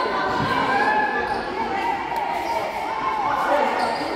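Echoing gymnasium din of a futsal game: shouting voices from players and spectators over the thuds of the ball on the hard court.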